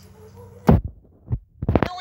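VHS tape audio played through a TV speaker at the join between two trailers: a steady low hum, then a loud thump about two-thirds of a second in, a softer thump, and a quick cluster of thumps near the end, with the hum dropping out between them.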